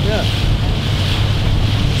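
Small speedboat under way, its engine running in a steady low rumble, with wind buffeting the microphone and water rushing along the hull.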